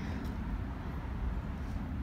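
Steady low outdoor background rumble with no distinct sound events.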